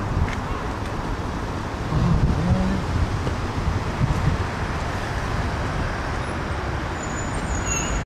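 Steady rumble of city street traffic, cars and buses passing, with a brief thin high squeal near the end.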